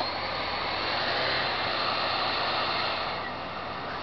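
Steady rushing air noise of a laptop cooling fan, swelling slightly in the middle and easing off near the end, with a single click at the start.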